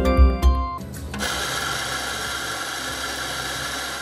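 A short news jingle ends about a second in, then an electric espresso grinder runs steadily, grinding coffee beans into a portafilter.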